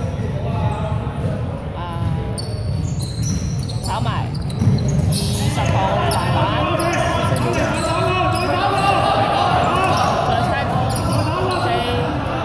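Indoor basketball game on a hardwood court: the ball bouncing, with players' voices calling out in a large, echoing hall, the voices getting busier from about five seconds in as play resumes.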